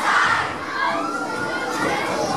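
A crowd of children shouting and cheering together, many voices overlapping, just after their singing.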